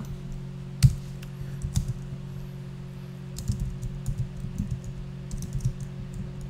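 Computer keyboard typing: a few scattered keystrokes in the first two seconds, then a quick run of keystrokes in the second half, over a steady low hum.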